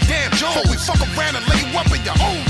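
Hip hop track with a deep bass beat hitting about twice a second under a rapped vocal.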